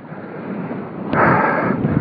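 Strong wind buffeting the microphone: a rough rushing noise that swells and grows louder about a second in.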